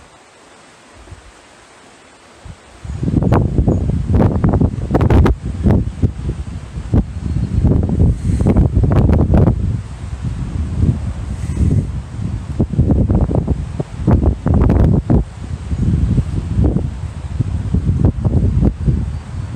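Wind buffeting the microphone in irregular gusts, a loud low rumble that sets in suddenly about three seconds in after a quiet start.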